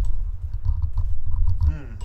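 Microphone handling noise as the desk microphone is turned around by hand. It starts with a sharp knock, followed by low bumping and rumbling with small clicks for most of two seconds.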